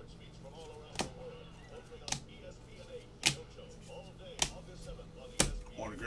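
Rigid plastic card holders clicking, about one sharp click a second, six in all, as the encased trading cards are handled and set down one after another.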